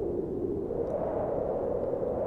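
A steady, low, wind-like ambient whoosh from the soundtrack's background sound effect.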